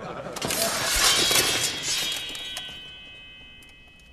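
A longsword drawn from its scabbard: a long metallic scrape that swells over the first two seconds, then a high metallic ring that fades away.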